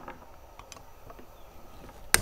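A few faint, short metal clicks as a screwdriver works at an oil plug on a gas meter's housing.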